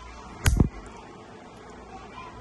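A metal nail clipper snapping shut through a long acrylic nail: one sharp snip about half a second in.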